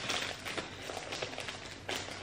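Plastic packaging bag rustling and crinkling as it is handled and opened, with a sharp click shortly before the end.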